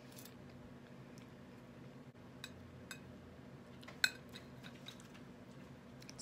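A metal spoon clinking lightly against a ceramic soup bowl several times, with the sharpest clink about four seconds in, over a faint steady hum.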